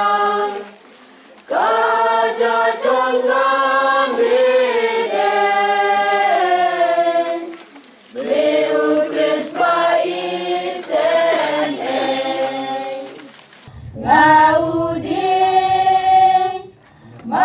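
Choir singing a hymn without accompaniment, in long held phrases broken by short pauses about a second in, about halfway through and shortly before the end.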